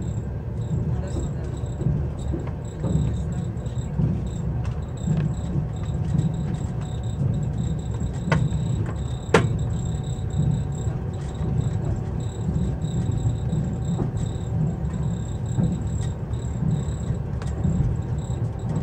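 Passenger train running along the track, heard from inside the carriage: a steady low rumble of the wheels, with two sharp clicks about eight and nine seconds in and a faint high-pitched chirring that comes and goes.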